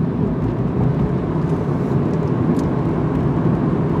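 Steady low rumble of a moving car heard from inside its cabin: engine and road noise while driving, with no sudden events.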